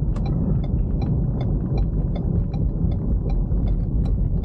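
Turn-signal indicator clicking steadily, about two and a half clicks a second, over the low rumble of road and tyre noise inside a moving car's cabin.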